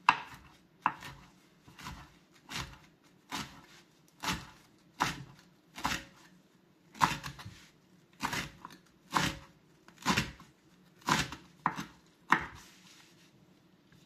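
Kitchen knife chopping fresh sage leaves on a wooden cutting board: a series of sharp knocks of the blade striking the board, roughly one a second, ending shortly before the end.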